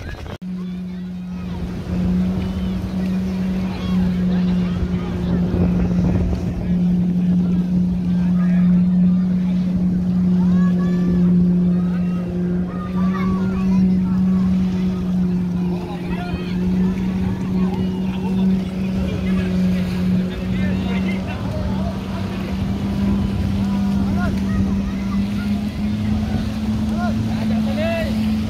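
Jet-ski engine running hard to drive a flyboard's water jet: a loud, steady drone that steps slightly higher in pitch near the end.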